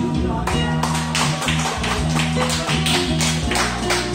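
Karaoke backing track playing an instrumental interlude with no singing: sustained low notes under a steady tapping beat that comes in about half a second in.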